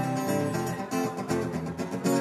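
Acoustic guitar being strummed, a run of chords with regular strokes.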